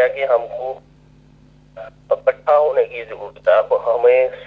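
A man speaking in two stretches with a pause of about a second between them, over a steady low electrical hum.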